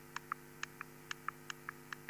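Faint clicks of a key or presenter button, each press giving a quick click pair, about two presses a second, stepping through animated slide frames. A steady electrical hum runs underneath.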